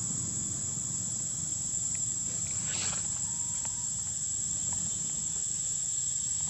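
Steady high-pitched drone of insects such as cicadas or crickets, over a low rumble. A short, higher chirp or squeak stands out about three seconds in, with a few faint ticks.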